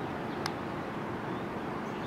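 Steady low background noise, with a single faint click about half a second in as the TaoTronics TT-SK06 Bluetooth speaker is switched on by its power button.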